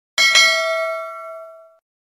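Notification-bell chime sound effect of a subscribe animation: a bell ding struck twice in quick succession, then ringing and fading away over about a second and a half.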